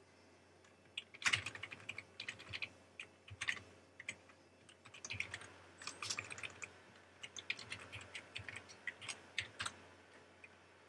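Typing on a computer keyboard: irregular runs of keystrokes starting about a second in.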